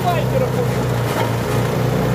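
Walk-behind petrol snow blower running steadily, its engine a low even drone while the auger throws snow.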